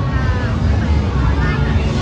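Busy nightlife street ambience: nearby voices talking over a loud, steady low rumble.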